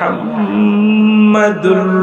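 A man's voice chanting a long, drawn-out held note, then breaking into a new note about one and a half seconds in: the sung, chanted delivery of a Bengali waz sermon.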